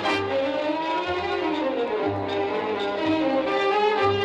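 Lebanese orchestral music with violins playing a melody that glides up and down, over a low bass line.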